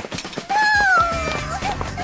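Music with a high voice holding one long, slowly falling note, followed by a few short vocal fragments.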